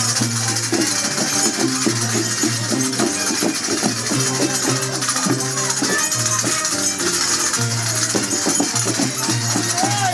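Andean negritos dance music: a violin melody over a bass line of changing low notes, with shaken rattles hissing steadily on top.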